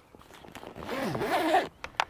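Heavy-duty waterproof zipper on a PVC rooftop cargo bag being drawn shut along the bag's edge. It rasps louder as the pull goes on, then stops shortly before the end with a small click.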